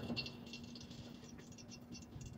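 A few faint, light clicks and rattles from a stick stirring cloth in an enamel dye pot, mostly in the first half-second, over a faint steady hum.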